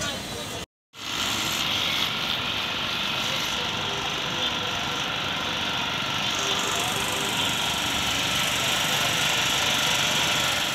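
A small portable generator's engine running steadily, a constant drone with a hissy high edge, after a brief silent break about a second in.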